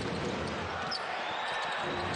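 Steady noise from a crowd in a basketball arena, heard with play under way on the court.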